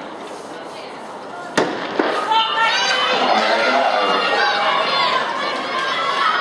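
A starting gun fires once, sharply, about a second and a half in, sending the hurdles race off. Straight after it many spectators start shouting and cheering, louder than the murmur before the shot.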